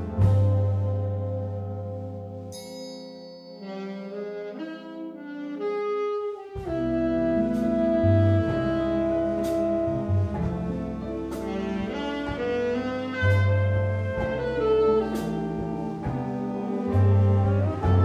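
Big band playing a medium-swing jazz number. Sustained brass and reed chords thin out over the first few seconds. About six seconds in, the bass and drums come back with regular cymbal strokes under a solo saxophone line.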